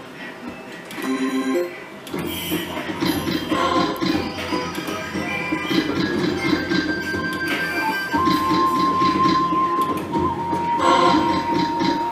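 Slot machine's electronic game music and sound effects playing while the reels spin, a dense jingle with a long held tone in the last few seconds.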